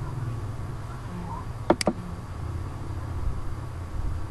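Two quick, sharp clicks of a computer mouse button a little before halfway, over a steady low electrical hum.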